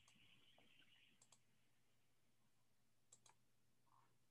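Near silence broken by two pairs of faint clicks, one about a second in and one about three seconds in: computer mouse clicks.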